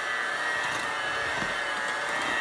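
Electric hand mixer running at a steady speed, its beaters working through a stiff cake batter of flour and creamed butter and eggs. It makes a constant motor whine.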